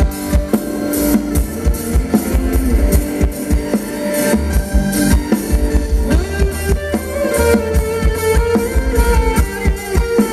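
Thai ramwong dance music played by a band, with a drum kit keeping a steady beat under guitar.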